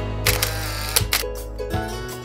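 A camera shutter sound effect over background music: a sharp click about a quarter of a second in, a short rush of noise, and a second click just under a second in.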